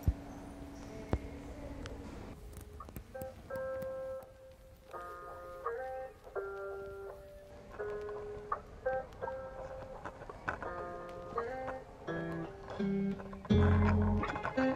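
Background music: a plucked guitar melody comes in about two and a half seconds in and carries on. Before it, a church bell's tone fades out and two sharp clicks sound.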